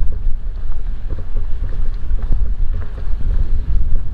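Wind buffeting the microphone: a loud, irregular low rumble that gusts and eases.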